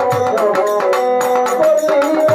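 Live Bengali folk music: a violin playing a wavering melody over held harmonium notes, with drum strokes keeping time.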